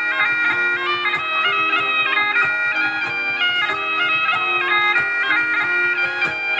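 Bagpipes playing a lively dance tune, the melody stepping from note to note several times a second without a break.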